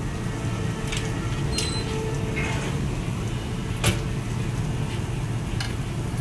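Steady low hum of kitchen ventilation, with a few short sharp clicks and knocks, the loudest about four seconds in, as a frying pan of potato gratin is put into the oven.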